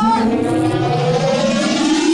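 A long, siren-like tone rising slowly and steadily in pitch, with a slight waver, played loud in a large hall.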